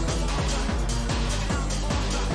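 Electro dance music from a live DJ set, loud and steady: deep kick drums that drop in pitch hit in a quick, broken rhythm under hi-hats and synth lines.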